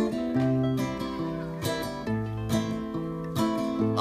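Acoustic guitar strumming chords, the notes ringing on between strokes, in an instrumental gap between sung lines of a song.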